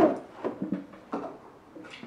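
A toddler's high 'pew pew' voice cuts off at the start. A quiet stretch follows, with a few soft, short sounds: small clicks and brief low murmurs.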